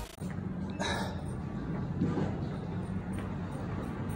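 Train station platform ambience: a steady low hum with a short, high sound about a second in and a fainter one about two seconds in.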